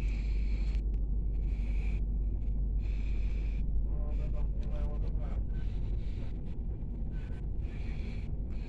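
Running noise of a Pesa SunDeck double-deck passenger coach in motion, heard inside the lower-deck cabin: a steady low rumble of wheels on the rails, easing slightly near the end.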